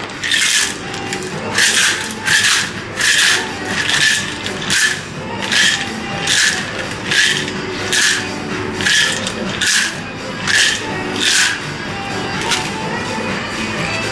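Ice in a cocktail shaker, shaken lightly: a slow, even rattle of about one stroke a second that stops a few seconds before the end.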